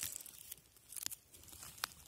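A hand handling a bolete mushroom among dry pine needles, twigs and moss on the forest floor: faint crackling and rustling, with a few sharp clicks spread through the moment.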